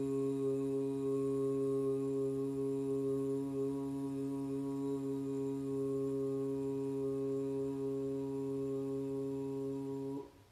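A woman chanting one long, unbroken 'ooh' on a single low, steady pitch: the 'u' sound of Udgita (upward song) chanting.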